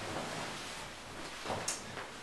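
Soft rustling and creaking of a mattress and fabric as a person turns over onto their stomach on a sofa bed, with a short swish near the end.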